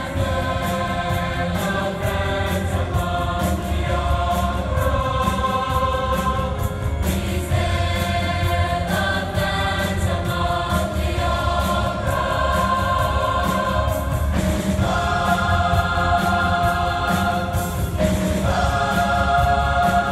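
Large mixed choir of many voices singing, holding long sustained chords that change every couple of seconds.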